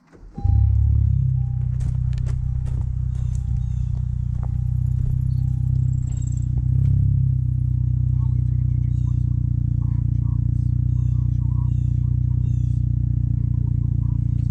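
Honda Civic engine starting about half a second in through its aftermarket exhaust, a brief flare of revs, then settling into a steady idle.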